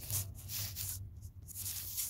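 Short rubbing and scuffing noises in several strokes, as of something brushing or sliding against a surface.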